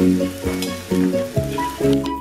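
Background music with a steady beat of about two a second, over the sizzle of fried idli and vegetables being stirred with a steel spatula in a steel wok.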